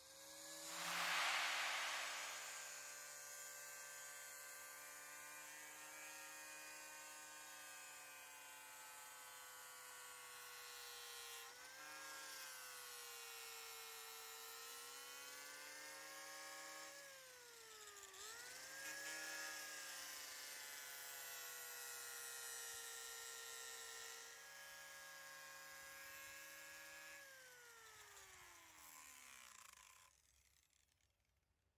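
Small electric angle grinder with an abrasive disc grinding the wood of a log's belly groove up to the scribe line. It runs at a steady whine, dips in pitch briefly a couple of times, and winds down near the end with its pitch falling.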